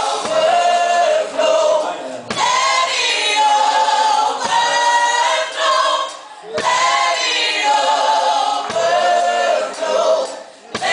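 A group of voices singing a gospel worship song together, in repeated phrases about two seconds long with brief breaks between them, with little or no drum heard.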